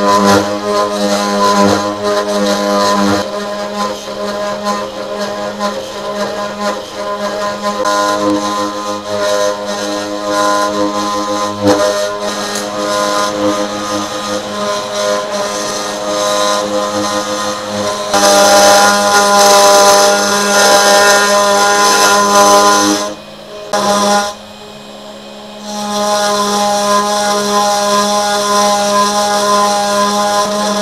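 Desktop CNC router spindle running with a steady droning whine while a 1/8-inch single-flute bit mills a pocket in aluminum plate, the cutting noise shifting in pitch as the bit moves. A little past halfway it grows louder and harsher, then drops away for a couple of seconds near the end before picking up again.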